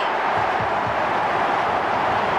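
Stadium crowd cheering a goal: a steady wash of many voices with no single voice standing out.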